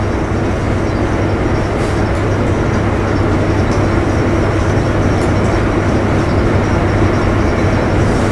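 Steady, loud background noise with a constant low hum, unchanging throughout and with no speech.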